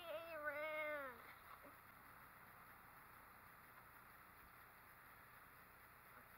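A woman's drawn-out, wordless whining vocalisation, wavering and then falling in pitch, lasting about a second at the start; the rest is near silence.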